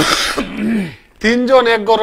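A man clearing his throat with one short, harsh rasp at the start, followed by a brief voiced sound and then men talking.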